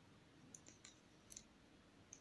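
Near silence with four or five faint, short clicks from a metal crochet hook working yarn.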